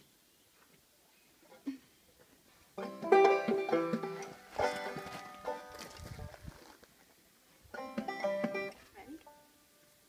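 A banjo played in short bursts: after about three seconds of near silence, a couple of seconds of strummed, ringing notes, a pause, then another brief strum about eight seconds in.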